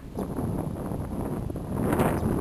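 Wind blowing on a handheld camera's microphone: a steady low rushing noise.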